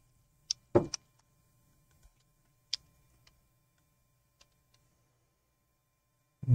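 A few scattered, sharp clicks from computer keys and a mouse, the loudest about a second in, with long quiet gaps between them and a faint low hum underneath.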